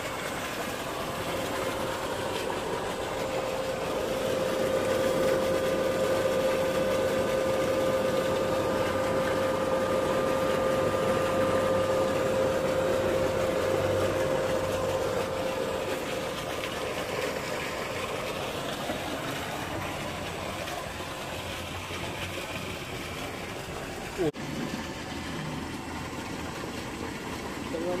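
Solar tubewell pump set running with a steady mechanical hum. A steady whine sits over it for about the middle third, and there is a single knock near the end.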